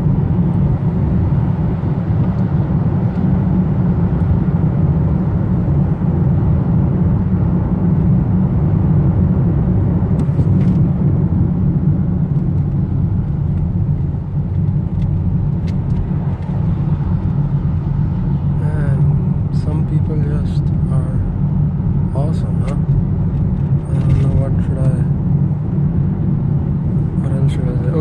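Steady low rumble of road and engine noise inside the cabin of a car moving in freeway traffic.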